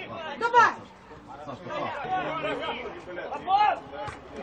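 Men's voices shouting during a football match, calls of 'davai' ('come on') among overlapping chatter, loudest about half a second in and again near the end.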